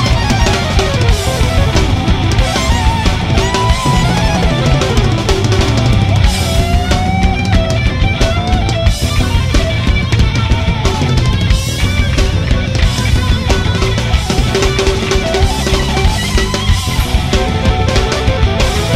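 Live hard rock band playing loudly in an instrumental passage: a lead electric guitar line with bending, gliding notes over a busy drum kit.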